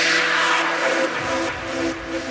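Progressive trance music in a breakdown: a falling noise sweep over sustained synth tones, with the kick drum and bass out. Bass comes back in a little over a second in.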